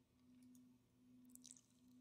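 Near silence: faint room tone with a low steady hum, and a few faint clicks about three-quarters of the way through, likely a computer mouse.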